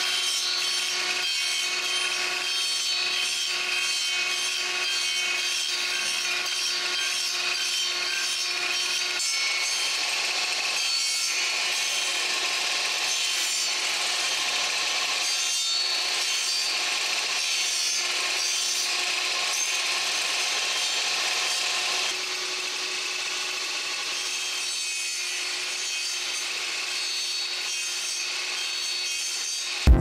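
Table saw running and cutting joints into small wooden window-frame pieces: a steady motor and blade whine over the noise of the cut, a little quieter near the end.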